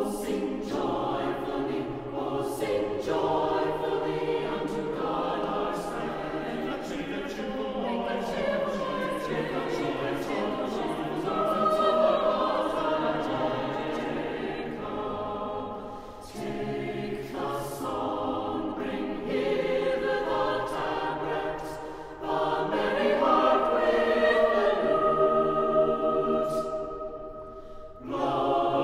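A choir singing a sacred piece, in long sung phrases with short breaks about sixteen and twenty-two seconds in.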